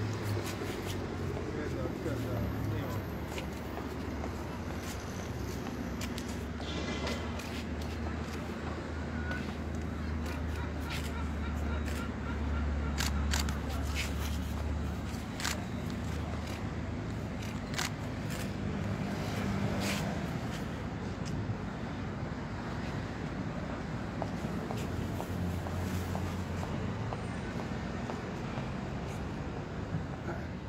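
Outdoor street ambience: a low rumble of traffic that swells for several seconds midway and again near the end, under the indistinct murmur of people talking quietly and scattered small clicks.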